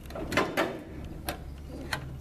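A few light, separate metal clicks as fingers handle the cotter pin and castellated nut on an aileron control-rod end, over a low steady hum.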